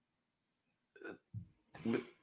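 A man's short, throaty vocal noises in a pause between phrases: near silence at first, then, from about a second in, three brief grunt-like sounds, the last a voiced hesitation sound, each a little louder than the one before.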